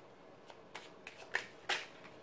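Tarot cards being shuffled: a handful of short, crisp flicks, the two loudest about a second and a half in.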